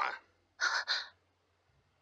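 A young woman's short startled gasping exclamation, about half a second long, coming just after half a second in.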